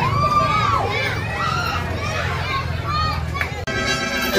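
Many children's voices chattering and calling out over one another, over a crowd hubbub. The sound cuts off abruptly shortly before the end.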